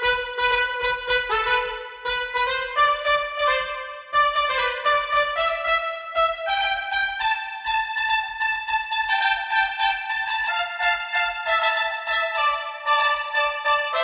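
Fluid Brass sample library's two-trumpet patch playing a fast passage of short, detached brass notes, several a second, the pitch stepping up and down.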